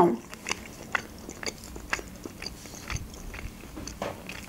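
A person chewing a mouthful of food with the mouth closed, close to the microphone. It comes as an irregular scatter of short, soft mouth clicks and snaps.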